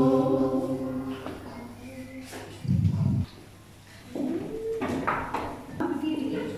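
Girls singing a prayer in unison, its last held note fading out within the first second or so; a short low thump about three seconds in, then brief indistinct voices.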